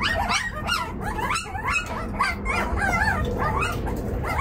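A litter of young puppies whining and yelping at once, many short high cries overlapping several times a second: hungry pups crying to be fed.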